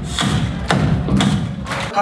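Wedding guests clapping in time with a thumping beat, about two beats a second.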